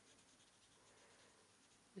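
Near silence, with the faint scratch of an alcohol-based marker tip being worked over card as she shades a stamped image.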